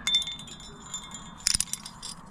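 Aluminium carabiners of a climbing quickdraw clinking against each other and the protection as the quickdraw is clipped in: short metallic jingles with a bright ring, one at the start and a louder cluster about one and a half seconds in.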